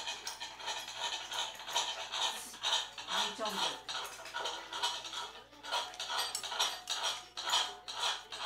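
Eating utensils clinking and scraping against a dish in a string of short, irregular strikes.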